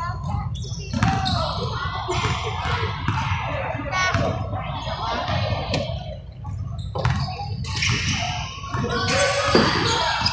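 A basketball bouncing on a hardwood gym floor, a string of sharp knocks, with indistinct voices of players and spectators around it in a large gym.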